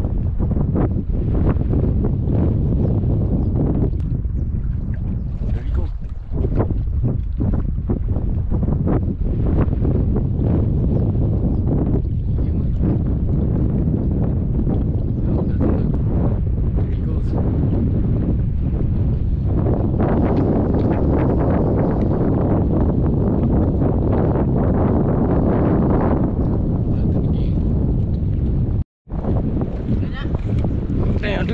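Wind buffeting the microphone, a loud low rumble that rises and falls in gusts, cut off by a brief dropout near the end.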